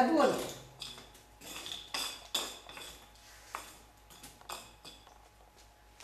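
Light metallic clinks and knocks, irregular and spaced a second or so apart, as metal things are handled at a brick bread oven. They grow fainter toward the end.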